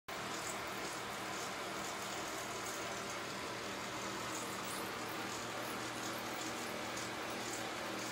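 Steady background hiss with a faint low hum underneath, unchanging throughout.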